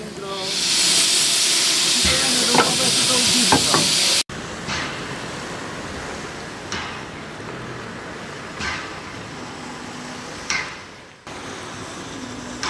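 Steam locomotive letting off a loud, steady hiss of steam for the first few seconds, with voices under it. After an abrupt cut, the slowly moving locomotive's steam exhaust gives short chuffs about every two seconds over a quieter steady background.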